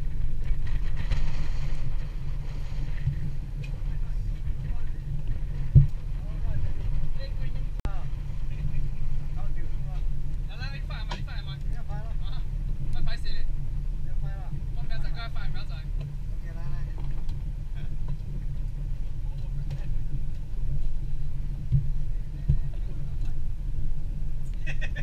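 Steady low rumble of wind and water around a small open boat at sea, with a single sharp knock about six seconds in. Voices call out now and then through the middle stretch.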